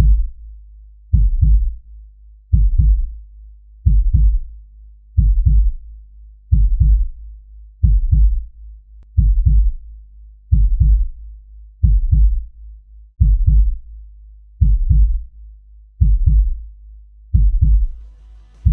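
Slow heartbeat-style pulse: a low double thump, like 'lub-dub', about every 1.3 seconds over a steady low drone.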